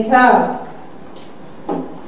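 A woman's voice reading aloud in Nepali over a microphone. She finishes a phrase just after the start, then pauses for about a second with a short sound near the end.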